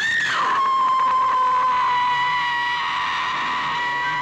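A long, high-pitched scream that starts suddenly, swoops up and then holds one steady pitch. Near the end a second steady tone joins it.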